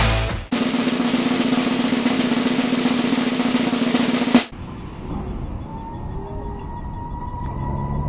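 Snare drum roll sound effect, starting about half a second in as the music stops, held steady for about four seconds and cut off suddenly. After it, a much quieter background with a faint steady whine.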